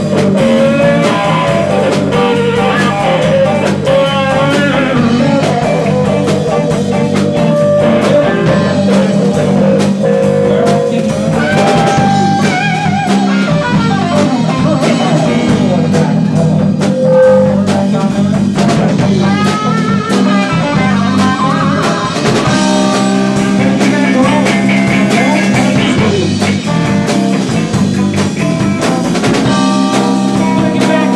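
Live blues-rock band playing an instrumental passage: two electric guitars, electric bass and drum kit, with a lead guitar line full of string bends and vibrato over a steady groove.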